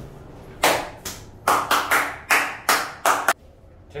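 A quick run of about nine sharp hand claps, roughly three a second, each with a short ringing tail in the small metal elevator car.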